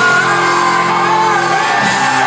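Live band playing a song with a singer holding long notes over sustained chords; the chord changes near the end.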